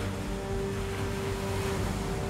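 Steady noise of storm wind and surf on Lake Superior, with background music holding a sustained note underneath.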